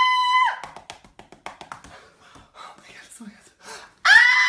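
A high-pitched, held squeal of a voice that stops about half a second in, followed by quieter rapid clicking mouth sounds and breathy fragments of chatter; another squeal begins at the very end.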